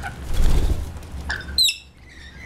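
Rainbow lorikeets jostling close by at a dish: a brief low rumble about half a second in, a click, then one short, sharp high screech near the end.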